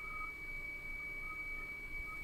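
Quiet room tone: a faint steady background with a thin, constant high-pitched tone running through it.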